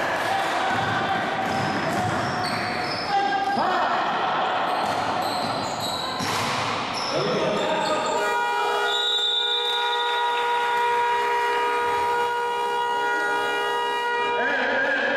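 Sounds of a basketball game in an echoing gym: the ball bouncing on the court and players' voices. From about halfway through, a steady chord of several held tones sounds over it and stops near the end.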